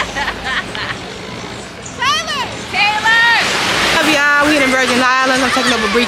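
Water sloshing around people wading in the sea, then raised voices calling out over it from about two seconds in.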